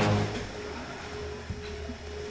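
Background music: a low sustained drone, joined about half a second in by a single steady held note.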